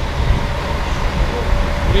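Steady low rumble of road traffic and outdoor background noise.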